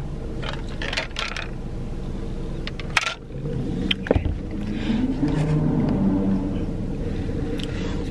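Two sharp plastic clicks about a second apart, from a shaker bottle's flip-top cap being handled, over a steady low hum inside a car.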